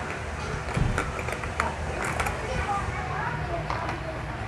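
Nail polish bottles and a plastic manicure case being rummaged through: a handful of sharp clicks and knocks as bottles and plastic parts touch, spread unevenly over the few seconds.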